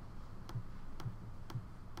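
Faint sharp clicks, evenly spaced at about two a second.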